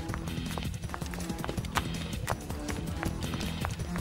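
Quick footsteps clicking irregularly on hard pavement, over music with low sustained notes.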